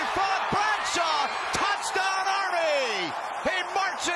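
An excited sports commentator's voice, with drawn-out, falling calls, over steady stadium crowd noise during a long touchdown run.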